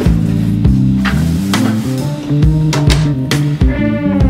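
Background music with a drum beat over sustained bass notes.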